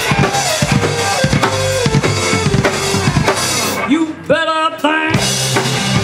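Live rock band with the drum kit out front, playing a busy fill on snare, rimshots and bass drum over electric bass and guitar. About four seconds in the band drops out briefly under a short held note. Then the full band kicks back in.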